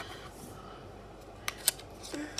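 Two light, sharp clicks close together, about a second and a half in, from a plastic Nokia 3310 mobile phone being handled with its back cover off and battery freshly fitted.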